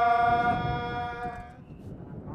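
A single long note held steady in pitch during a Hindu temple worship ritual; it fades out about one and a half seconds in, leaving a faint low murmur.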